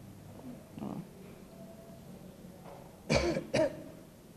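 A man clearing his throat twice in quick succession into a handheld microphone near the end, with a fainter throat sound about a second in.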